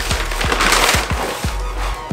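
Paper shopping bag rustling and crinkling as a shoebox is pulled out of it, loudest in the first half, over background music with a steady beat.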